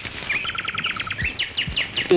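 A bird singing: a fast trill of short, sharp, falling notes, then a few slower single notes near the end.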